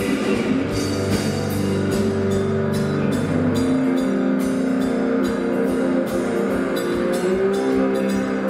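Live Louisiana blues band playing: electric guitar over a drum kit with regular cymbal strokes, the low notes of the bass line shifting a little under halfway through.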